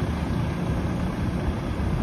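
Volvo FM 400 heavy-haul truck's diesel engine running steadily as it approaches slowly, under a low rumble of wind on the microphone.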